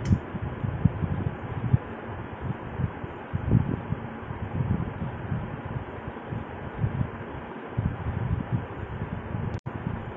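Steady hiss of background room noise with irregular low rumbles and thumps underneath, cutting out for an instant near the end.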